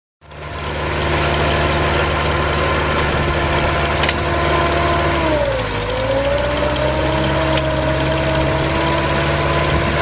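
The engine of a truck-mounted soil-test drill rig runs steadily while it turns the auger. About halfway through, the engine note dips in pitch and then slowly climbs back up.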